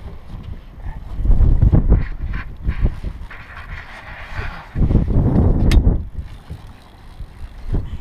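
Wind buffeting and handling rumble on the camera's microphone in two loud low bursts, about a second in and again around five seconds, with a single sharp click just before six seconds.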